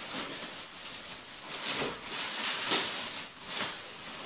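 Rustling and crinkling of plastic packaging and rummaging in a cardboard box as a plastic-bagged item is lifted out, in uneven bursts that grow louder in the second half.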